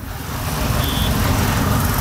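A loud, low rumble with hiss, swelling over the first half second and then holding steady, with a brief high beep about a second in.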